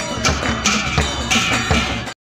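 Rhythmic festive percussion: sharp ringing metallic strikes about three times a second over low drum beats.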